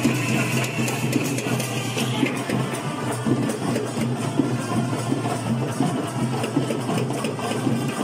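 Perahera procession music with dense, rapid drumming. A high steady tone is held over it in the first two seconds, then stops.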